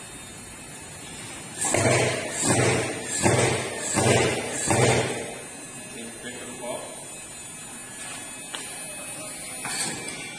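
Thermal fogger being started by hand: its air pressure pump is stroked five times, about 0.7 s apart, each stroke bringing a brief low puff from the pulse-jet engine, which does not yet keep running.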